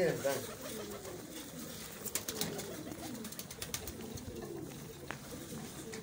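A flock of domestic pigeons cooing, with low, repeated, gliding coos overlapping throughout. A few short sharp clicks fall in the middle.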